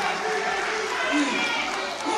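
An audience applauding, with a few voices heard in the crowd.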